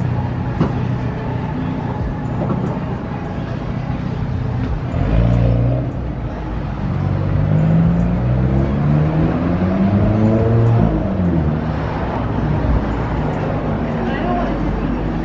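Street traffic on a city street, with a motor vehicle's engine passing close by, its pitch climbing from about six seconds in and dropping away near eleven seconds.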